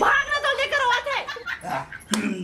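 A high-pitched human voice crying out loudly in several wavering, drawn-out cries with no clear words.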